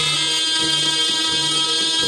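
Live Jaranan Thek ensemble music: a long, buzzy held note from a slompret (Ponorogo double-reed shawm) over a steady drum beat about twice a second.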